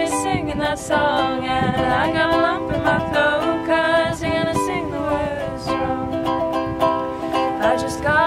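Ukulele strummed steadily, with women's voices singing along at times.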